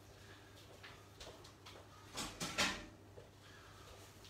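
Kitchen handling noises: a few light knocks, then a short clatter a little over two seconds in.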